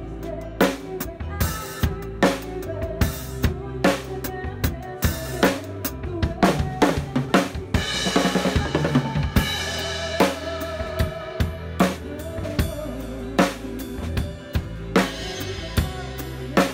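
Drum kit played live with a band: a steady beat of bass drum and snare strokes over sustained bass and chordal tones. About six seconds in comes a busier run of fast drum strokes, followed by a wash of cymbal.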